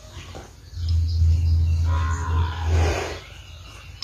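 Zebu bull lowing: one deep moo lasting about two seconds, starting about a second in and ending in a breathy rush.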